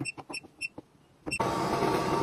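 Touch control panel of a smart shoe cabinet beeping several times in quick succession as its buttons are pressed. About a second and a half in, a steady whir with a faint hum sets in.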